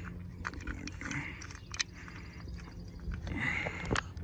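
Scattered small clicks and scraping of a terminator being unscrewed from a cable TV tap port with a hand tool.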